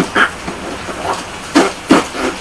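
A man's vocal sound effect mimicking lava breaking out of the ground: short voiced noises, then a loud hissing burst about one and a half seconds in.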